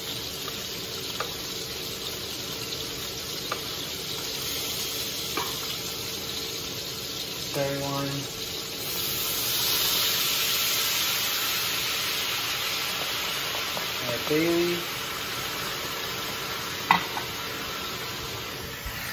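Chicken pieces frying in hot oil in a sauté pan, a steady sizzle. About nine seconds in, white wine is poured into the pan and the sizzle swells louder for a few seconds, then eases back. A few light clicks.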